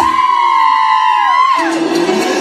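A high voice holds a loud whoop-like note for about a second and a half while the band drops out, then slides down in pitch. A fainter lower glide falls beneath it.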